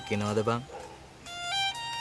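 Background music score: after a brief spoken word, a single held high note comes in and steps up in pitch twice.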